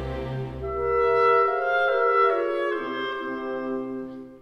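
Orchestral background music: a slow melody of held notes stepping from pitch to pitch over sustained low notes.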